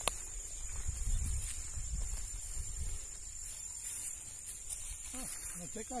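Insects buzzing steadily in a high, thin tone, with a low rumble during the first half.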